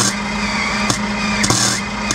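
Arc welder laying a tack weld on a drive shaft's universal joint end cap: a steady crackling arc over a low electrical hum, with a couple of sharper pops.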